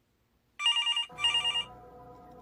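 Telephone ringing sound effect: two trilling rings of about half a second each, starting about half a second in, followed by a faint steady tone that holds on.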